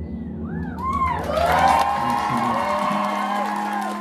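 The low sustained notes of a live band's song die away while the audience breaks into whoops, then cheering and applause from about a second in.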